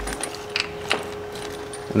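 A few light metallic clicks and clinks as the CAGS solenoid is unscrewed by hand and lifted out of the TR6060 transmission case, over a faint steady hum.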